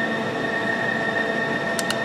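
Steady hum with a high whine from a CNC lathe standing idle with its spindle stopped, and two quick clicks close together near the end from keys pressed on its Fanuc control panel.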